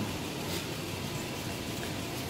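2014 Toyota Tacoma's V6 idling steadily after a remote start, heard as an even hum and hiss with no distinct beats or changes.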